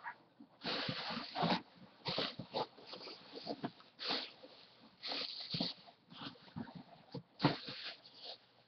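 Plastic bags and bubble wrap rustling and crinkling as hands move them about inside a cardboard box, in short irregular bursts.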